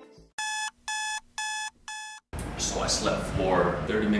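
Electronic alarm beeping four times, about two beeps a second, each a short steady tone. A man starts speaking a little past halfway through.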